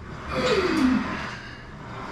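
A man's forceful breath out with a falling groan, lasting under a second, as he strains to pull a loaded barbell up from the rack pins in a rack pull.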